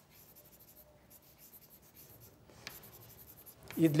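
Chalk writing on a blackboard: a run of faint, short scratching strokes, with a brief pause about two and a half seconds in.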